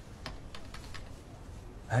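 Typing on a laptop keyboard: a short, uneven run of light key clicks.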